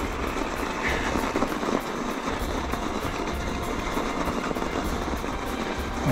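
Electric mountain bike being ridden over packed snow: a steady rushing noise from the tyres on snow and the drive.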